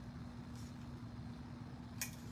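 Quiet room tone: a steady low hum over a faint rumble.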